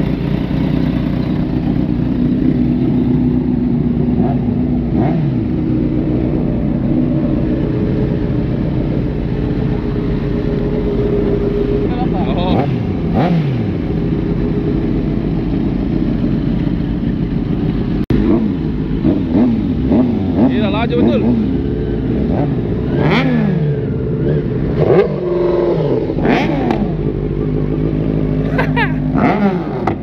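Several sport motorcycles idling steadily, then revving up and down as they pull away and ride off in a group.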